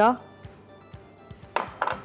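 A silicone spatula scraping and tapping against a mixing bowl to clear off cream-cheese filling, ending in a quick run of several sharp knocks about a second and a half in.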